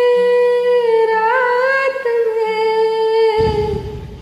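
A woman's voice holding one long, nearly steady sung note over a faint karaoke backing. It breaks off about three and a half seconds in, leaving a quieter low rumble.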